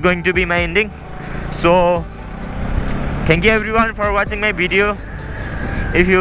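A song with a singing voice, its held notes wavering in pitch, in phrases with short gaps; in the gaps a steady rushing noise.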